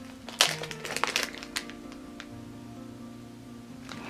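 Clear plastic wrapper crinkling and crackling as a wax melt is handled, in the first second and a half. After that come soft held music tones that change chord about halfway through.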